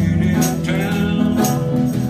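A live band playing a song: guitars and bass over drums with a steady jingling beat, and a voice singing.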